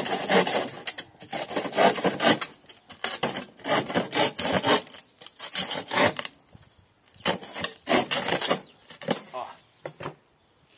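Bow saw cutting through a wooden board, the blade rasping in quick back-and-forth strokes about two a second, with a short pause partway through. The board is cut in two near the end.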